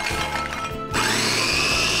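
Electric mini food chopper starting up about a second in, its motor whine rising quickly to a steady high speed as the blades grind Oreo cookie wafers into powder.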